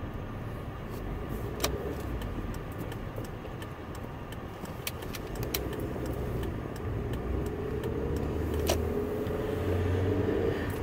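Car engine and road noise heard from inside the cabin while driving, a steady low rumble that grows louder in the second half as the engine note rises with acceleration. Two short clicks break in, one early and one near the end.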